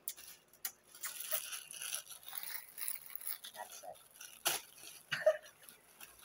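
Crinkling and crackling of a plastic pocket-tissue packet squeezed and handled close to a phone microphone, starting about a second in, then a couple of sharp clicks later on.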